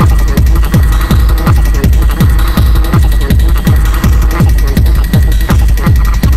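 Hardtek electronic dance music: a steady kick drum with a falling pitch on every beat, nearly three beats a second, over a constant deep bass and a thin high synth tone.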